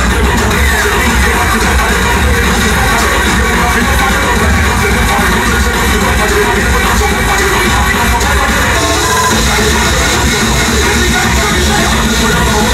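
Loud breakcore-style electronic music played from a DJ's decks over a club sound system, with heavy, steady bass.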